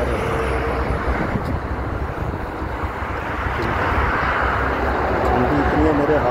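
Steady rush of highway traffic passing beneath an overpass, tyres and engines of trucks and cars, with a low rumble underneath; it swells about four seconds in as vehicles go by.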